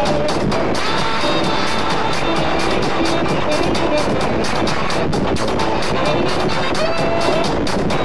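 Loud, dense music with a steady beat and held notes.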